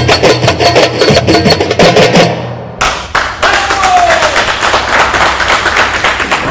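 Egyptian tabla (darbuka) with a hand-percussion ensemble of riqs and frame drums, playing a fast run of crisp strokes that breaks off about two and a half seconds in, then two last sharp hits. Applause follows as a steady wash of noise.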